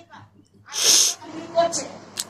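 A person sneezing once, loudly and abruptly, about a second in.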